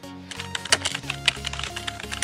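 Computer keyboard typing sound effect: a quick, irregular run of key clicks starting about a third of a second in, over electronic background music.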